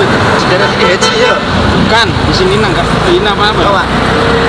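Voices talking over steady road traffic noise.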